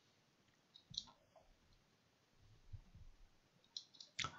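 Near silence, with a few faint computer keyboard key clicks about a second in and just before the end, as keys are pressed to page through terminal output.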